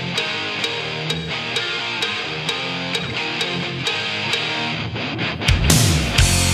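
Hard rock song intro: an electric guitar riff over a steady ticking beat about twice a second, with the full band, drums and bass, coming in loudly near the end.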